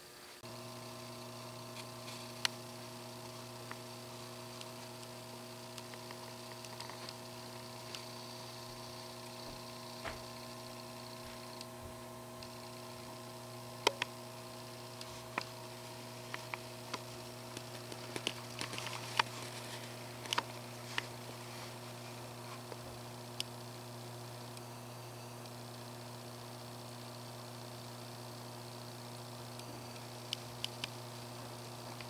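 Steady low electrical mains hum, with a few faint, scattered clicks, most of them bunched together past the middle.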